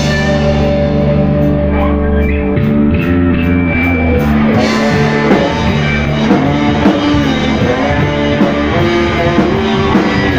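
Live rock band playing loud: electric guitar and bass chords held and ringing for the first four seconds or so, then the drums and cymbals come in fully and the band plays on in rhythm.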